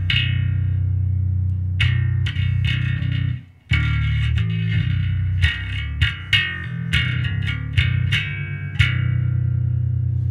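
Active electric bass played through an amp: a riff of deep, sustained low notes with repeated plucked attacks, breaking off briefly about three and a half seconds in before carrying on.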